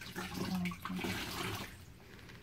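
Water streaming and splashing into a basin of water as a wet washcloth is squeezed out, dying away just before the end.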